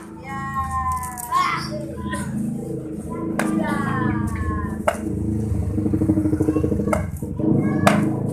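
Children playing, with long falling cries of a child's voice near the start and again in the middle, over a steady low background of music. Four sharp snaps cut through in the second half.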